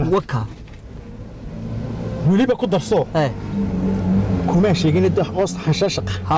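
A car engine running under men's voices. It grows louder over the first couple of seconds and then holds steady.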